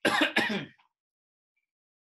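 A man clearing his throat: two short, loud rasps in quick succession near the start.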